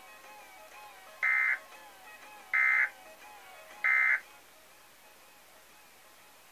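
Emergency Alert System end-of-message data bursts from a broadcast: three short, loud electronic buzzes about 1.3 seconds apart, closing the Required Monthly Test. A soft music bed plays underneath and stops just after the third burst.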